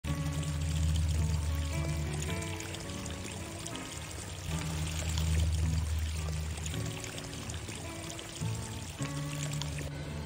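Water pouring and trickling steadily from an irrigation pipe, under background music with sustained low bass notes and a slow, stepping melody.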